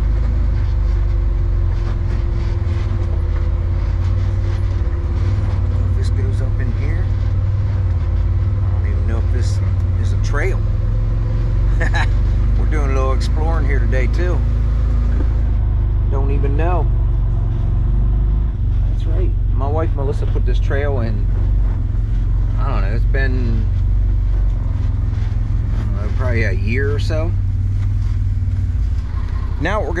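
Side-by-side UTV running and driving, a steady low engine rumble throughout.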